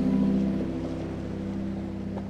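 A steady wash of sea surf, with the last harp notes ringing on and fading out.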